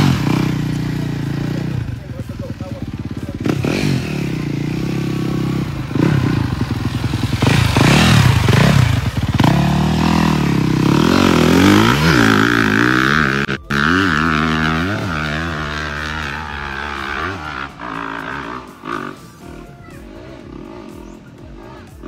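Yamaha dirt bike engine revving up and down repeatedly as it rides on a dirt track, then fading as the bike moves off.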